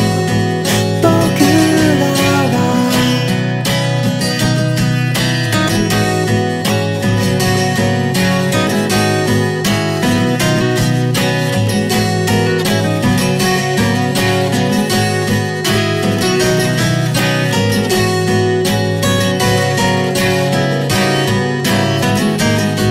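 Acoustic guitar strummed in a steady rhythm, playing a song's accompaniment.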